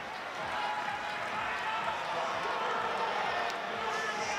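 Crowd of spectators at a climbing competition making a steady hubbub of many voices.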